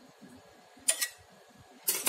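A metal knife tapping against the aluminium pressure cooker and the potato pieces inside it. Two light clicks come about a second in, and a sharper click near the end.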